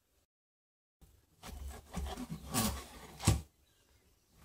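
A 3D-printed plastic battery module sliding down four threaded steel rods onto the module beneath it, starting about a second in. The rubbing and clatter of the plastic on the rods ends in one sharp knock near the end as the module seats.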